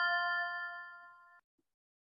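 Bell-like chime of a logo sting ringing and fading, cut off abruptly about one and a half seconds in.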